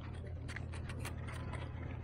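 A string of small plastic clicks and ticks as a camera and its plastic packaging insert are pressed and fitted together by hand, over a steady low background rumble.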